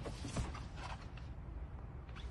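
Faint creaking with a few light clicks in the first second, over a low steady rumble inside the car's cabin.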